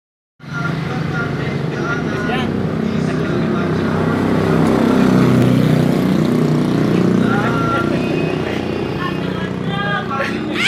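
A motorcycle engine running steadily, a little louder around the middle, with people talking over it.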